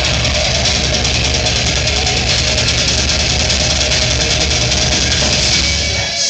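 A death metal band playing live at full volume: a dense, loud wall of distorted electric guitars, bass and fast drumming with a heavy low end. The full band drops out right at the end, leaving a guitar playing on its own.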